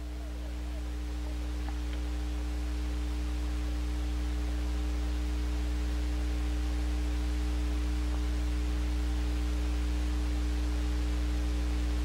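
Steady low electrical hum with a faint hiss behind it, growing slowly louder and with no race or crowd sound standing out.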